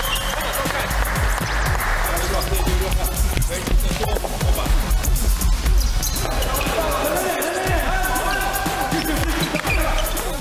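Basketballs bouncing on a hardwood gym floor during a practice drill, over background music, with voices in the gym.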